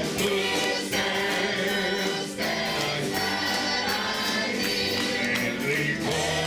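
Gospel choir of men's and women's voices singing together, with a man singing lead into a microphone.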